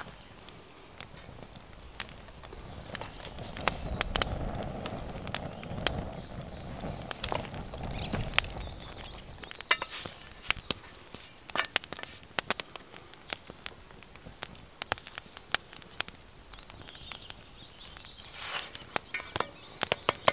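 Wood fire crackling, with irregular sharp snaps throughout and a low rumble for several seconds in the first half.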